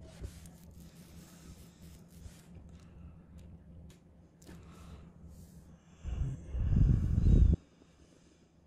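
A strongman's loud, forceful breathing as he braces over a heavy deadlift bar, coming in about six seconds in, lasting a second and a half and stopping abruptly. Before it, only a low hum and a few faint clicks.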